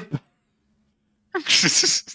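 A short, breathy burst of a person's voice about one and a half seconds in, following a brief lull with only a faint steady hum.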